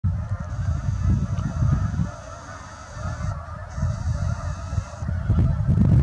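A flock of geese honking, many overlapping calls throughout, over a loud gusty rumble of wind on the microphone.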